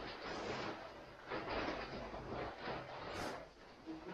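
Rustling and crinkling of a large plastic bag and a foam sleeping mat being handled and pulled out, in irregular swells.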